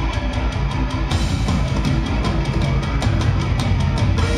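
Deathcore band playing live through a venue PA: heavy guitars and bass over a drum kit with rapid cymbal and drum hits, loud and dense, heard from within the audience.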